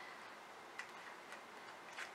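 Faint, scattered small clicks and ticks from fingers working at the stuck fastener of a small gold makeup bag, which will not open.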